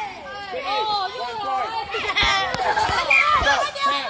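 Several children's voices calling and chattering over each other, with a few short dull thumps partway through.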